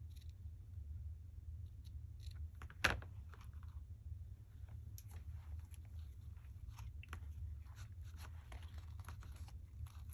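Quiet hand-handling of paper and lace: small rustles and taps as a glued pocket is pressed down and adjusted, with one sharper click about three seconds in, over a steady low hum.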